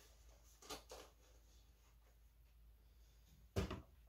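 Quiet handling of an opened cardboard CPU box, with two faint rustles about a second in and one sharp knock near the end.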